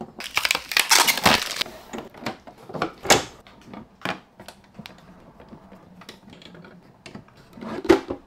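Frames and acrylic panels of an EIBOS Polyphemus filament dryer enclosure being fitted together by hand: a quick run of rattling clicks, then several separate clicks and knocks, a quiet stretch, and another knock near the end.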